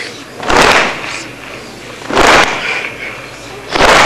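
A crowd of mourners striking their chests with their hands in unison, three heavy slaps about a second and a half apart, the steady rhythm of sineh zani chest-beating.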